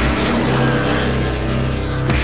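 Several race car engines running loudly at speed, their overlapping engine notes held steady.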